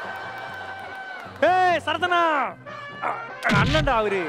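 Edited TV soundtrack: a held background-music note, then two arching, yelping calls about a second and a half in, like a dog-bark sound effect or a voice imitating one. A thud comes just before the end.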